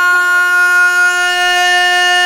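A young man singing a Pashto naat, holding one long loud note at a steady pitch.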